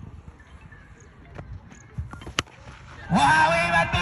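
A single sharp crack of a cricket bat striking a tennis ball, about two and a half seconds in, as the ball is hit for six. Just before the end, a loud, sustained sound with pitched tones sets in.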